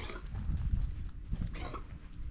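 Boer goats close by making a few short sounds, the clearest about three-quarters of the way in, over a steady low rumble.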